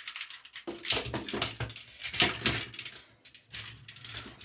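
Hard plastic parts of a Transformers Studio Series Devastator figure clicking, knocking and rattling under the hands as pieces are pushed and pegged into place: a quick run of sharp clicks.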